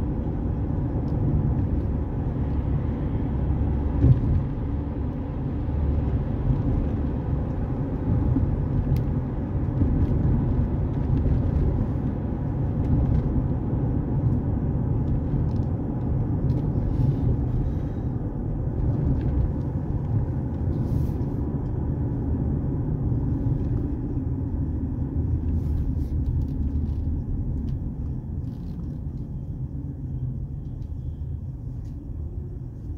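A car driving on the road: a steady low rumble of engine and tyre noise, with a single short knock about four seconds in.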